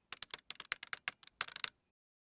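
Keyboard typing clicks: a quick, irregular run of about a dozen key clicks that stops shortly before the end.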